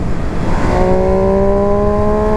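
A 140-horsepower motorcycle engine running under steady throttle, its note rising slowly as the bike gains speed, over heavy rushing wind noise; the engine tone comes through clearly about two-thirds of a second in.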